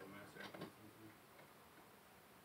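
Near silence in a small room, broken in the first second by a faint, brief voice and a few soft clicks.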